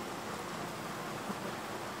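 Steady faint hiss of room tone, picked up by a clip-on microphone.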